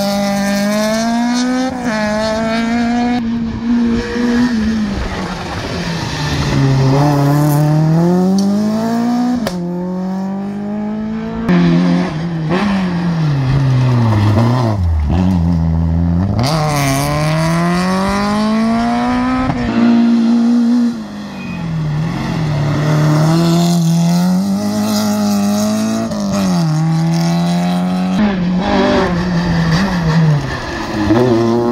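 Rally car engines on a special stage, revved hard. The pitch climbs and then drops sharply at each gear change, dips low as a car slows for a hairpin, then rises again as it accelerates away, while one car fades and the next one arrives.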